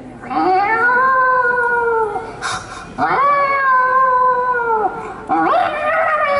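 A man imitating an animal call with his voice through cupped hands into a microphone. There are two long, drawn-out calls, each rising, holding and then dropping at the end, and a third begins near the end.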